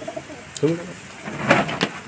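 Domestic pigeons cooing: a short coo about half a second in and a louder, rougher one about a second and a half in.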